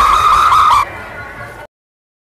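A loud, high warbling tone over the procession's din that breaks off abruptly under a second in. Quieter street noise follows, then the sound cuts to complete silence at an edit.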